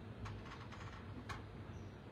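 Quiet room tone with a steady low hum and a few faint, short clicks, one about a quarter second in and another just after a second.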